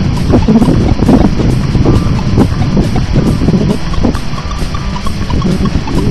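Strong wind buffeting the microphone: a loud, uneven rumble that rises and falls throughout.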